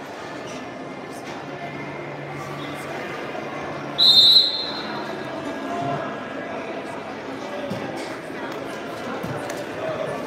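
A referee's whistle, one short blast about four seconds in, over the steady murmur of a crowded gym.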